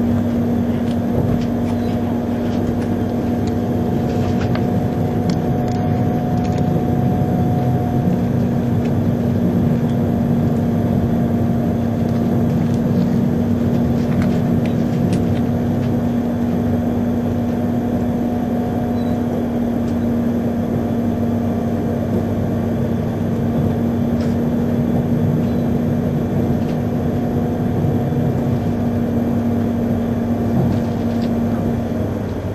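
Steady running noise heard from inside an E3-series Komachi mini-Shinkansen car moving at speed, with a constant low hum and a fainter higher tone and a few faint clicks.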